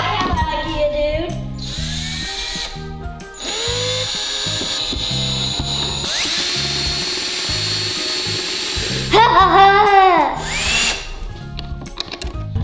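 Cordless drill driving screws into particleboard panels, a steady whine for several seconds starting about three seconds in. Bouncy background music plays throughout, with louder swooping tones about nine seconds in.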